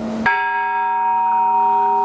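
Small bell of an Orthodox church belfry struck once just after the start, then ringing on steadily with several clear tones.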